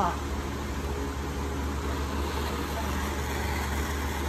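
Gas torch flame blowing steadily onto gold on a charcoal block: a continuous even rushing noise with a steady low hum underneath.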